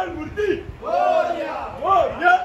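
A group of men shouting a devotional chant together in unison, in short loud phrases, two or three in quick succession.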